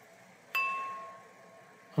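Stemmed, gold-rimmed cocktail glass struck once with a finger about half a second in. It rings with a clear bell-like tone that slowly fades.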